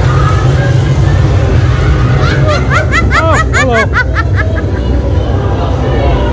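A burst of laughter, a quick run of high 'ha' syllables, from about two seconds in to about four and a half seconds, over a loud, steady low rumble.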